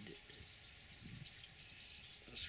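Faint outdoor background noise over open marshland: a low rumble and a thin, steady high hiss, with no distinct event.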